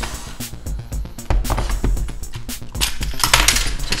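Clicks and clinks of a clear plastic precision screwdriver case being slid across a desk and opened, its metal screwdrivers rattling inside, with the busiest cluster about three seconds in. Background music with a low beat plays underneath.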